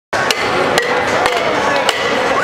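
Four sharp knocks, about half a second apart, from flair bartenders' bottles and metal shaker tins being caught and knocked together, over steady crowd noise.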